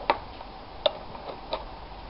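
Steel parts of a homemade sheet metal shrinking tool clicking against each other as they are fitted together by hand: three sharp clicks a little under a second apart, with lighter ticks between.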